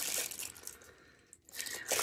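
Plastic packaging crinkling as it is handled, dying away about halfway through, with a brief rustle again near the end.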